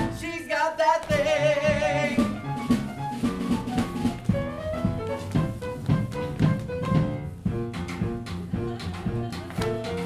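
Live jazz band playing an up-tempo swing dance number, the upright double bass and drums keeping an even beat. About a second in, a held note with vibrato sounds over the band.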